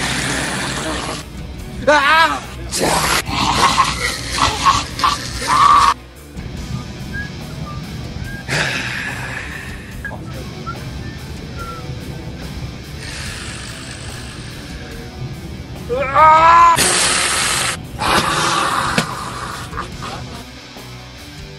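A man's voice in loud, wordless outbursts over music. Two wavering, gliding cries come about two seconds in and again near the end, between short noisy bursts.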